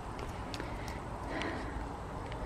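Footsteps in sandals on a concrete patio: a few light, irregular taps over a faint steady background noise.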